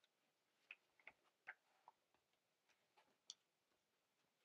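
Near silence with about nine faint ticks at irregular spacing, the last a brief high chirp.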